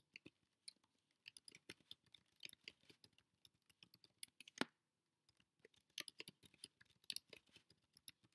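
Faint typing on a computer keyboard: quick runs of key clicks, with one louder click about halfway through and a short pause just after it.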